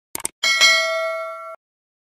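Logo-sting sound effect: two quick clicks, then a bright bell-like chime struck twice in quick succession that rings for about a second and cuts off suddenly.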